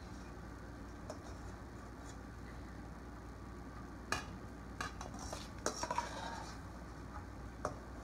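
Metal slotted spoon scraping and clinking in a stainless steel mixing bowl as roasted Brussels sprouts and diced apple are scooped out, with a handful of light clinks in the second half.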